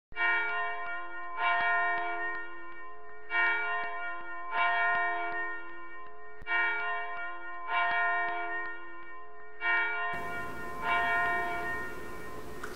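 A church bell struck eight times in four pairs, each stroke ringing on with many overtones before the next. A steady hiss comes in near the end as the last pair fades.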